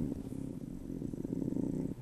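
A man's low, creaky hum through closed lips, a drawn-out hesitation sound of about two seconds in the middle of a sentence.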